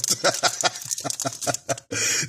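A man laughing in delight, a run of quick short pulses that breaks off near the end.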